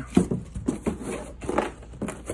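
Cardboard shipping box being opened by hand: its flaps scrape and flap in a handful of sharp, papery strokes.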